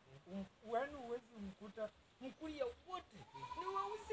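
Men talking in short, broken phrases, with a drawn-out, wavering call near the end.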